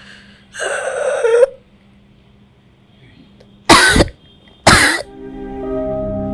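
A woman's long rasping breath, then two loud coughs about a second apart, as she struggles for air; soft plucked-string music comes in near the end.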